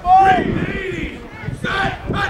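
Men's voices shouting over one another at an American football game while the teams are set at the line, with one loud drawn-out yell just after the start and more shouts near the end.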